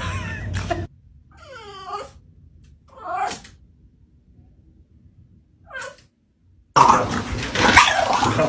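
French bulldog puppy giving short, yowling whines, three separate calls, the first sliding down in pitch: attention-seeking vocalizing. Near the end a much louder, busier stretch of sound begins.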